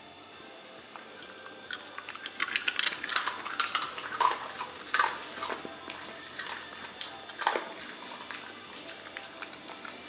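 An Italian greyhound eating a small treat: a run of crisp crunches and wet mouth smacks and licks, busiest from about two seconds in and dying away a couple of seconds before the end.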